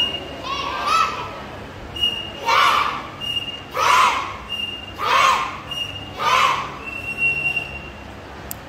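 A group of children shouting together in unison, five loud shouts about one and a quarter seconds apart, in time with their drill moves. A short, steady high tone sounds in the gaps between most shouts.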